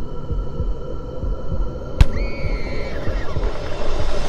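Dark cinematic sound-design bed: a low thumping pulse under a steady hum. About halfway through, a single sharp hit lands, followed by a short ringing tone that bends in pitch.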